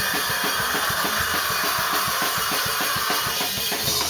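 A live rock band playing loud: fast drumming on a full drum kit with cymbals, under electric guitar, with a long held high note that dies away about three seconds in.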